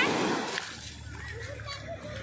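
Small waves breaking and washing up the wet sand, a splashing rush that is loudest at the start and eases off.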